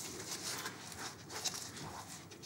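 Bristles of a flat paintbrush dragging across a painted canvas, a series of short scratchy, hissing strokes as the brush is swung around a compass arm to paint a circle.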